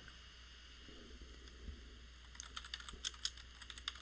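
Computer keyboard typing, faint: a quick run of keystrokes starting about two seconds in.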